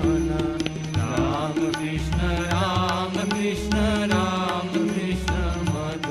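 Devotional singing: a voice holding wavering, ornamented notes over a steady low drone and drum beats.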